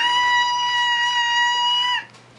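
A young child's voice holding one long, high, steady note for about two seconds, gliding up into it at the start and dropping off at the end.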